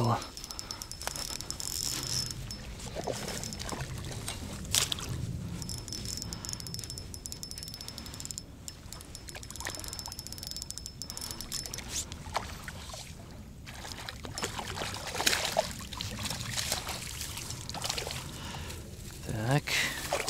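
Spinning reel being cranked in two spells, a fine rapid whirring tick, as a hooked trout is played in, with splashing and rod-handling knocks.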